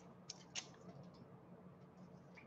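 Near silence, with a few faint clicks and taps of craft supplies being handled on a desk, about half a second in.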